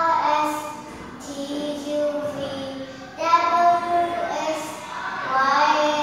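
A young child singing a song in phrases of long held notes.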